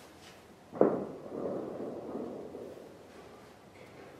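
A single sharp knock about a second in, followed by a couple of seconds of fainter rustling that dies away.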